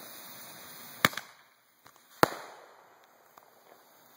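Roman candle set firing: a steady fuse hiss, then a sharp pop about a second in, and a second pop a little over a second later with a fading tail.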